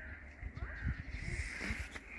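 A harsh bird call, loudest about a second and a half in, over a low rumble on the microphone.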